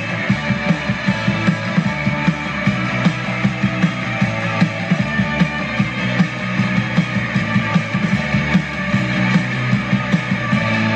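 Rock band playing an instrumental passage: electric guitars, bass guitar and drum kit, with a steady beat of about four drum hits a second.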